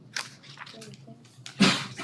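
Paperback book pages being leafed through, with soft paper rustles. Near the end there is a short, loud, breathy vocal sound.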